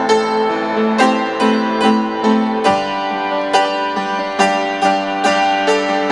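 Upright piano played slowly, with held chords and notes struck about twice a second. The bass and harmony change near the middle.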